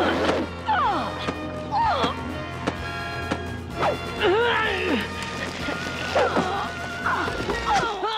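Cartoon score playing steady held chords, with whooping calls that swoop up and down about once a second and several sharp hits.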